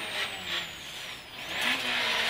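Rally car engine heard from inside the cabin, running low and quiet off the throttle through a tight right hairpin, then picking up with rising revs about one and a half seconds in as the car accelerates out.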